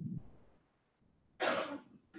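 A person coughing once, a short burst about one and a half seconds in.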